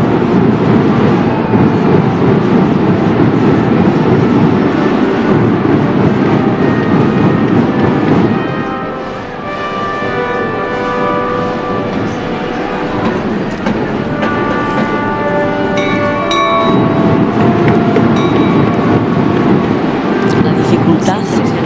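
A procession band of snare drums and bass drums with brass playing held chords over the drum roll. The drumming eases off about eight seconds in, leaving the brass notes clearer, and swells back in at full strength at about sixteen seconds.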